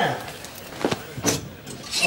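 Paper bag being handled, giving a few short, sharp crinkles: the first a little under a second in, the next about half a second later.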